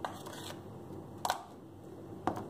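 Kitchen handling sounds: a faint click at the start, then one short knock about a second in, as a plastic container is set down on a glass tabletop.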